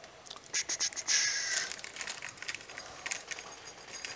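A small package being handled and opened: scattered clicks and taps, with a dense burst of crinkling and rustling about a second in.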